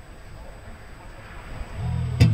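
Faint background noise, then low guitar notes come in near the end as the music begins.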